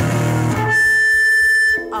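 Noise-rock band recording: a low held note, then a single high note sustained steadily for about a second before it breaks off.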